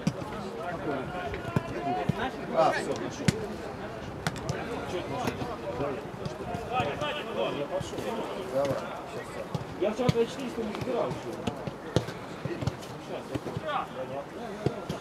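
Footballers' voices calling across an outdoor pitch, with a few sharp thuds of a football being kicked.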